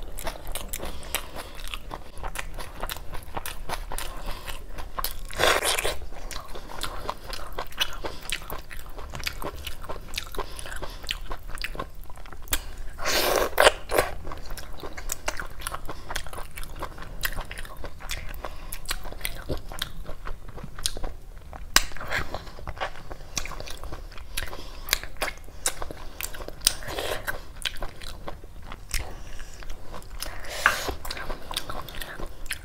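Close-miked eating of mutton curry and rice by hand: wet chewing and mouth noises with many small clicks, and fingers working the curried rice and meat. The sounds get louder for about a second around five and a half and thirteen and a half seconds in.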